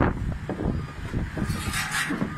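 A spinning teacup amusement ride running: an irregular low mechanical rumble with scattered knocks and rattles, and a short hiss near the end.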